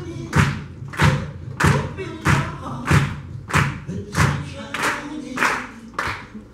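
Live rock drum kit played on a steady beat, about nine heavy hits roughly two-thirds of a second apart, each a low drum thump with a crashing cymbal ringing on top. The hits stop about at the end, closing the song.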